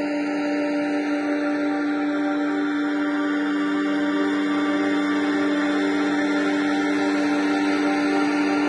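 Ambient electronic music: a sustained synth drone chord holding steady, with a slow sweep drifting down through the hiss above it and no drums.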